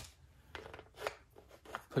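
Faint handling of a plastic disposable paint cup and its lid: a few light clicks and rubs, the sharpest click about a second in.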